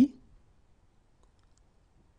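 A few faint, brief computer mouse clicks in near silence, just after a spoken phrase trails off.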